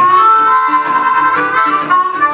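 Blues harmonica playing one long held note, cupped in the hands, over a National resonator guitar accompaniment.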